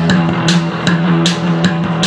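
Live rock band playing an instrumental passage without singing: electric bass holding a low note under steady drum and cymbal hits.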